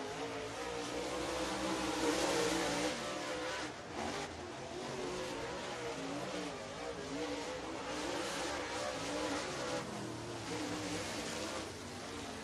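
Dirt super late model race cars' V8 engines running at speed on a dirt oval during qualifying laps, the engine note steadily rising and falling.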